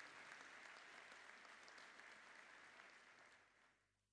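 An audience of seated deputies applauding, a steady patter of many hands clapping that fades out near the end.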